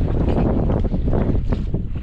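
Strong wind buffeting the microphone, a dense low rumble broken by short gusty knocks, over the wash of the sea around a small open boat.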